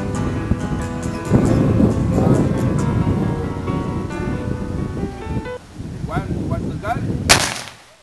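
Music plays for the first few seconds; then, about seven seconds in, the Noon Gun, an old muzzle-loading cannon, fires once as a single short sharp crack. Its deep boom is not picked up by the camera's microphone, so only a modest crack is heard.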